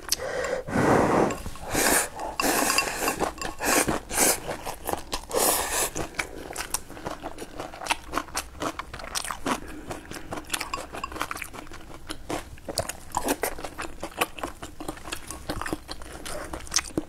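Close-miked eating: chewing mouth sounds, with chopsticks clicking against a ceramic rice bowl. There is a louder rush about a second in as food is scooped from the bowl into the mouth.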